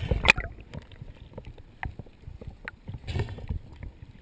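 Water sloshing and splashing against a camera at the sea surface as it bobs in and out of the water, with a loud burst of splashing at the start and another about three seconds in, and small drips and clicks between.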